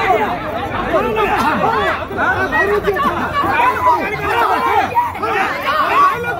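Several people talking loudly over one another, their voices overlapping without a break.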